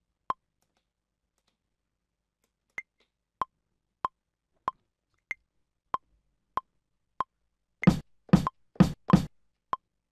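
Maschine's metronome clicking steadily at about one and a half clicks a second, with a higher click on the first beat of every four. About eight seconds in, a kick drum sample is played in live over the click, four quick hits.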